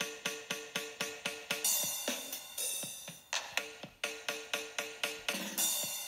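Electronic drum loop from the DigiStix drum app playing through the GlitchCore step-sequencer effect on an iPad, looping straight in 16th-note steps. It is a steady run of hits about four a second, with a held tone under parts of it and two cymbal washes, one a couple of seconds in and one near the end.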